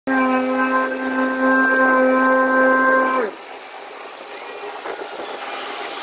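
A loud steady pitched tone, horn-like, holds for about three seconds, sags in pitch and cuts off. It gives way to the quieter steady running noise of asphalt paving machinery.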